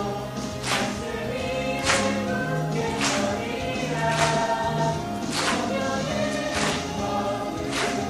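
A mixed group of men and women sings a Korean praise song in harmony over a steady beat, with a sharp hit about once a second.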